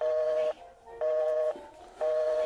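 Telephone busy signal coming from a phone on speakerphone after the call has disconnected: a low double tone beeping half a second on, half a second off.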